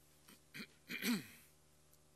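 A person clearing their throat: a short rasp, then a louder one about a second in whose pitch falls away.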